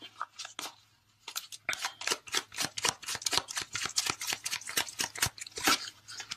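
A tarot deck being shuffled by hand: a rapid run of crisp card clicks and slaps, about eight a second, starting about a second in and stopping just before the end.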